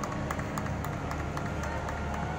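Scattered hand clapping from a small audience, irregular claps several times a second over a steady low background hum.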